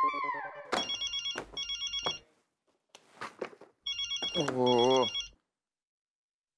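A telephone ringing twice, about a second in and again about four seconds in, each ring a rapid electronic trill in two short bursts. A man lets out a groaning 'Ohhh!' over the second ring.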